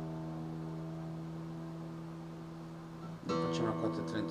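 Acoustic guitar strung with D'Addario nickel bronze strings: a strummed chord rings on and slowly fades, then the strings are struck again a little over three seconds in.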